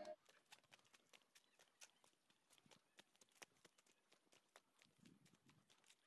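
Near silence with faint, irregular clicks. The tail of background music fades out right at the start.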